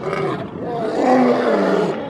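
A roaring animal sound effect in two parts: a short roar at the start and a longer one from about half a second in that trails off near the end.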